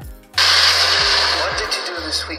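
Film soundtrack playing through the Umidigi Z1 Pro's single loudspeaker, loud: a sudden rushing, hissing sound cuts in about a third of a second in over a steady low drone, with dialogue starting near the end.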